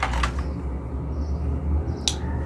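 Low, steady background hum or rumble, with a faint click or two near the start.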